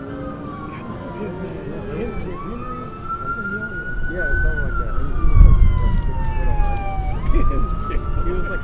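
A siren wailing, its pitch rising slowly, then falling for a few seconds before jumping back up near the end. Voices chatter underneath, and a low wind rumble on the microphone grows loud from about halfway through.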